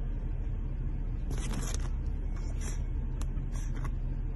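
Steady low rumble of a car cabin on the move, with a few brief rustles, the longest about a second and a half in.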